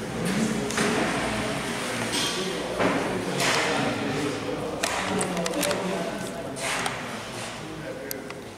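Background talk in a large reverberant hall, with several voices chatting and a few short knocks and clatters among them.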